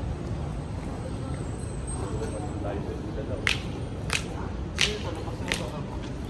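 Steady low outdoor background rumble. About halfway through, sharp footsteps on hard paving begin, about three clicks every two seconds at a walking pace.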